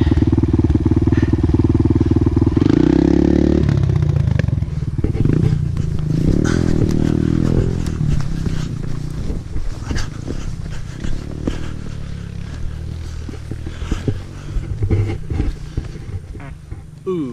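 Kawasaki KLX 140L single-cylinder four-stroke engine idling loud and close, then revving up about three seconds in as the bike pulls away. The engine note then grows quieter, rising and falling with the throttle, with scattered clicks and knocks close by.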